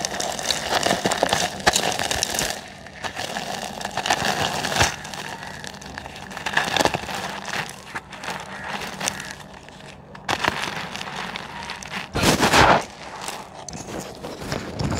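Dry reused pure cement being crushed and crumbled by hand into a cement pot: gritty crackling and crunching with many small sharp snaps, loudest in a dense burst near the end.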